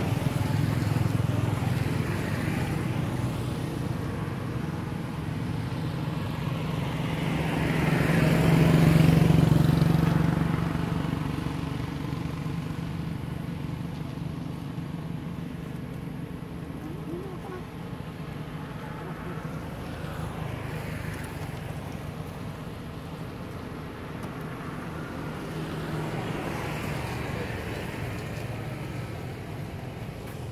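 Motor vehicles passing on a road over a steady low engine hum. One grows louder to a peak about a third of the way in and fades away, and a fainter one passes near the end.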